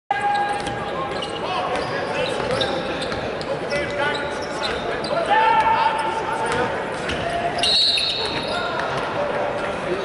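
Basketball being dribbled on a hardwood court, with sneakers squeaking and players' voices in a large hall. A referee's whistle blows shrilly for about a second, near the end, to stop play for a foul call.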